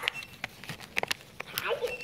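A plastic treat packet being handled right at a dog's nose: a few soft clicks and crinkles, then a person's voice starts near the end.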